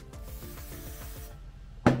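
Aerosol hairspray (Sebastian Professional) hissing from the can for about a second and a half, then stopping. A sharp click comes just before the end and is the loudest sound.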